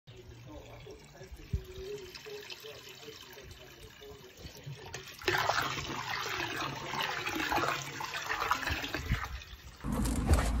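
Water from a garden hose pouring and splashing into a wooden barrel as it fills, starting suddenly about five seconds in.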